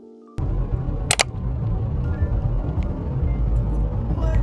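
Background music: a held keyboard chord breaks off a moment in, giving way to a loud, bass-heavy track with a brief bright hiss about a second in.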